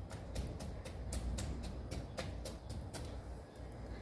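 Knife tip repeatedly pricking a raw pork loin on a wooden cutting board: faint, quick ticks, about three or four a second.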